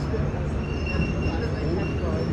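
Train moving through a railway station: a steady low rumble with faint high squealing tones from the wheels.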